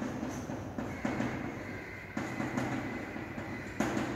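Chalk scratching on a blackboard as words are written, in a run of short scratchy strokes, with a thin high tone running under them from about a second in.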